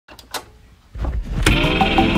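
Background music starting: a few faint short sounds at first, then a low swell about halfway through and a sudden chord near the end that opens into a sustained ambient pad.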